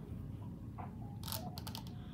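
Plastic paddle hairbrush handled close to the microphone, its plastic bristles giving a scatter of sharp ticks and scratches, more of them in the second second.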